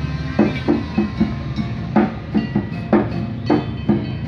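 Live percussion accompaniment: a hand drum and other struck percussion played in an uneven rhythm of about three strikes a second, over a steady low hum.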